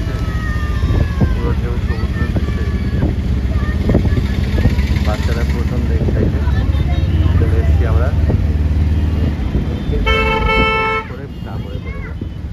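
Low rumble of a moving car and the street traffic around it, with faint voices. About ten seconds in, a vehicle horn sounds once for about a second.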